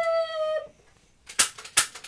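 A child's voice held on one high, steady note for about half a second, like a howl, then after a short pause three sharp cracks in the second half.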